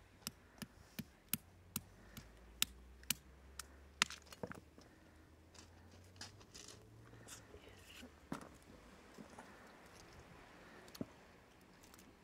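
A pebble tapping on a cooked spider crab leg laid on a rock to crack the shell: about ten sharp taps in the first four seconds or so, then softer cracks and clicks of shell being broken apart by hand, with two more knocks later.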